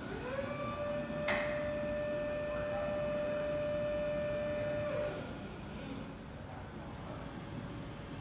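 Electric hydraulic pump motor of a Yale NTA0305B narrow-aisle forklift spinning up with a rising whine, then running at a steady pitch while the forks are raised, and winding down about five seconds in. A single sharp click comes about a second in.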